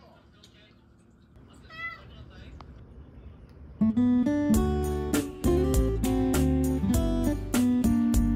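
A cat gives one short meow about two seconds in. About four seconds in, louder background music with plucked guitar starts and carries on.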